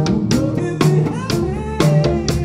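Live jazz band playing: a drum kit strikes a steady beat about twice a second under bass guitar, keyboard and a pitched melody line.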